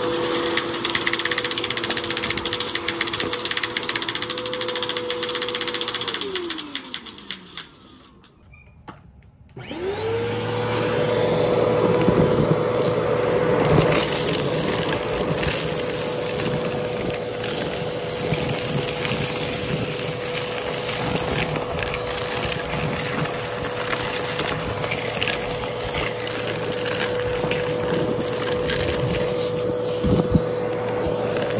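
A Bissell upright vacuum cleaner's motor whine falls in pitch as it winds down about six seconds in and goes nearly quiet. Just before ten seconds in it starts again with a quickly rising whine and then runs steadily. Hard debris crackles and rattles as it is sucked up.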